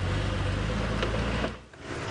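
Open safari vehicle's engine running with a steady low drone. It drops away briefly near the end, and another open vehicle's driving noise comes in.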